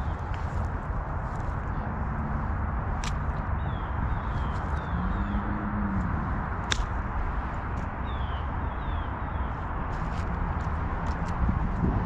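Steady wind noise on a head-mounted camera's microphone as the wearer walks over grass, with footsteps and a few sharp clicks. Faint short bird calls sound a few times.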